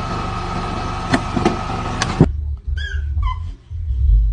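A vehicle engine runs steadily, with a few faint clicks. About two seconds in it cuts off abruptly and gives way to low rumbling handling noise with a couple of short high squeaks.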